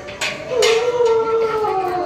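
Two sharp knocks, then a long drawn-out pitched voice-like sound held for over a second, its pitch sliding slowly down.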